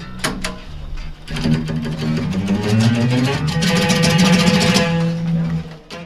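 Guitar playing: a few quick strums, then ringing chords from about a second in that stop abruptly just before the end.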